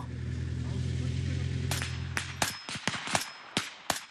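Assault rifles firing blank rounds: about ten sharp shots at irregular spacing in the second half. Under them at first is a low steady hum that cuts off about two and a half seconds in.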